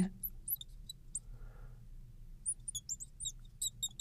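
Fluorescent marker squeaking on a glass lightboard as words are written: short high chirps through the first second, a pause, then a quick run of squeaks from about two and a half seconds in.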